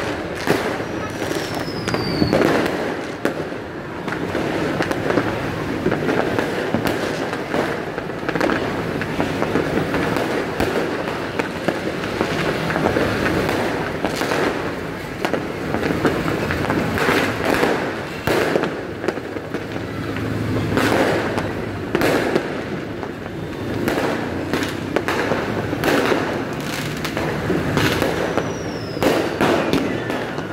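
Many fireworks going off at once across the town: a continuous rumble and crackle of bursts with frequent sharper bangs. A short falling whistle comes about a second in and again near the end.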